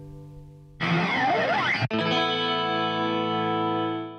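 Music: a classical guitar chord dies away. About a second in, an abrupt electronic effect cuts in, with pitches sweeping up and down past each other. After a momentary break it gives way to a steady held chord that rings on.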